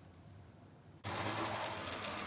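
Tri-ang Hornby Class 35 Hymek 00 gauge model locomotive running on the track. After about a second of near silence its electric motor sound starts suddenly and runs on as a steady hum.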